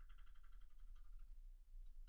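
Near silence: room tone with a steady low electrical hum, and a faint, rapidly pulsing high tone for just over a second at the start.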